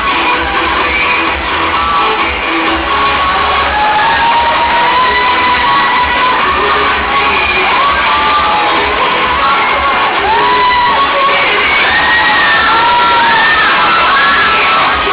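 Loud dance music with a pulsing bass beat over a cheering crowd. Short high whoops and screams rise and fall through it, more and more of them in the second half.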